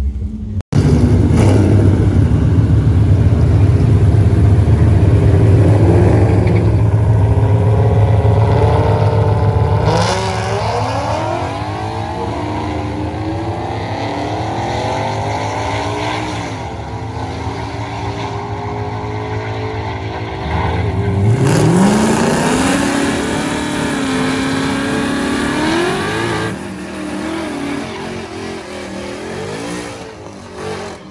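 Supercharged Coyote V8 drag car running at the strip: a loud, low engine drone at first, then a series of revs. About 21 seconds in the revs climb steeply and hold high for a few seconds, a burnout through the water box before the run.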